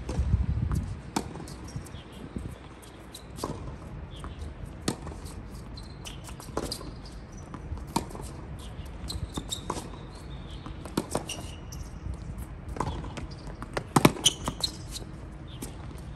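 Tennis rally on a hard court: sharp pops of racket strings striking the ball alternating with ball bounces, one every second or two, with the loudest cluster of hits near the end.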